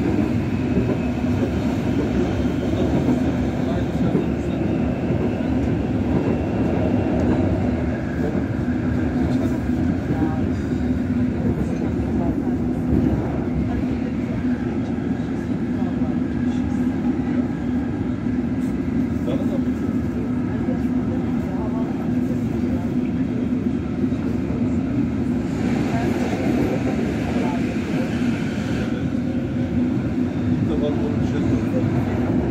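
Siemens B80 light-rail car running at speed, heard from inside the car: a steady rumble of wheels on the track with a steady low hum.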